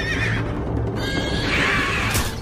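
A horse whinnying in two high, wavering cries, one at the start and one near the end, the cries of a horse as it is struck down.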